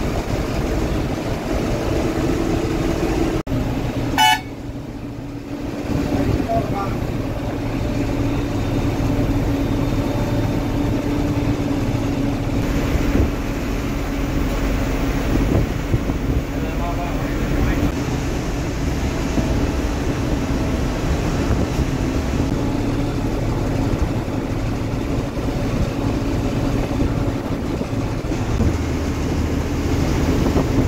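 Coach bus cruising at highway speed, heard from the driver's cab: a steady engine drone with road noise. A short horn toot sounds about four seconds in.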